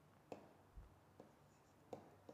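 A few faint taps of a stylus on a pen tablet or touchscreen, heard as short, light clicks spread over two seconds against near silence.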